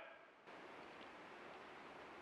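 Near silence: a faint, steady outdoor background hiss that comes up about half a second in.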